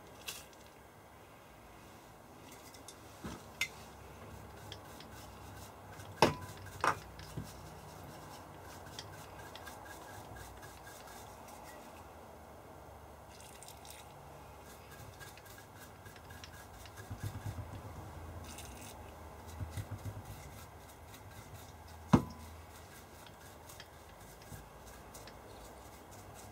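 Handling noise at a decade resistance box's switch panel while its contacts are cleaned: a few sharp knocks and clicks, and a spell of rubbing and scraping a little past the middle, over quiet room tone.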